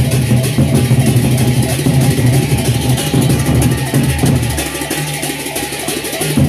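Lombok gendang beleq ensemble playing: large Sasak barrel drums beaten by hand and stick in a dense, driving rhythm over sustained gong tones and a constant clash of cymbals. The playing eases a little in loudness during the second half.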